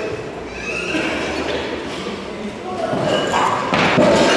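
Voices calling out, growing louder toward the end, with a sharp thud near the end as a weightlifter pulls a loaded barbell into a clean and his feet land on the wooden platform.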